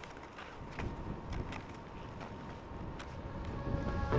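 Footsteps crunching in snow, a few irregular crunches a second, over a low rumble that grows louder toward the end.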